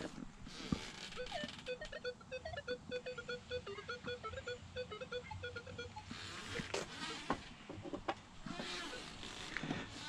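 Minelab X-Terra Pro metal detector giving a quick run of short, choppy beeps for several seconds, then stopping, with a few light knocks afterwards. The broken beeping is the detector only just hitting a coin masked by a notched-out pull tab.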